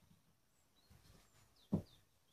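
Quiet room with a few faint, short high squeaks, then a single knock near the end as a whiteboard marker and eraser are handled against the whiteboard.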